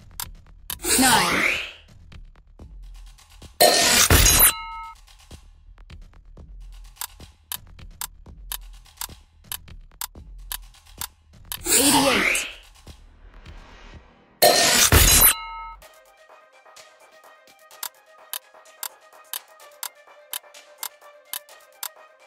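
Quiz-game sound effects over background music: a regular ticking countdown, with whooshing transitions about a second in and again near twelve seconds. Two loud sudden hits, each trailed by short tones, come about four and fifteen seconds in. After the second hit the music changes to a steadier held tone under the ticking.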